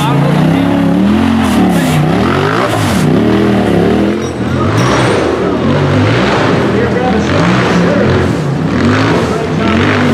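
Race buggy's engine revving hard again and again as it claws up a steep muddy climb, its pitch swinging up and down with each blip of the throttle.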